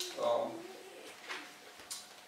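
A man's voice trailing into a short drawn-out hesitation sound mid-sentence, then a quieter pause before speech resumes.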